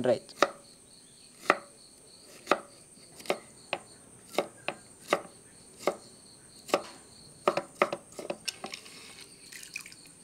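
Large knife chopping peeled tender bamboo shoot on a wooden cutting board: a dozen or so sharp strokes about a second apart, coming closer together near the end.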